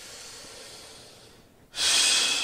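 A man's deliberate deep breathing during a snake-breathing exercise. A long, soft inhale fades out, then a louder breath starts abruptly near the end.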